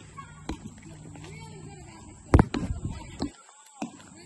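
Close knocks and taps on the phone's microphone: a few light taps and one sharp, loud knock about halfway through, as hands wave and brush against the phone. Faint children's voices carry in the background.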